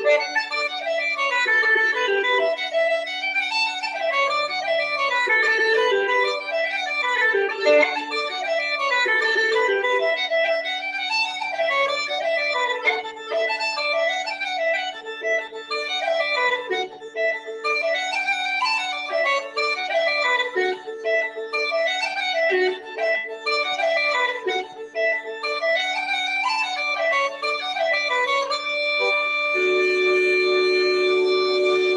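Uilleann pipes playing a fast Irish jig: a quick, ornamented chanter melody over a steady drone. Near the end it settles onto a held chord.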